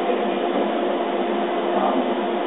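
Laser cutter running while it cuts: a steady mechanical hum and whir with a low steady tone, even throughout.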